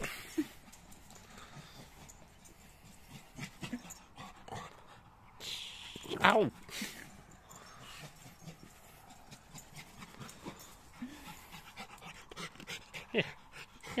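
Small Lhasa Apso–Shih Tzu cross dog panting, with faint soft sounds of it moving about on grass.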